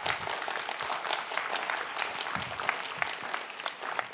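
Audience applauding: many hands clapping in a dense, even patter at a steady level.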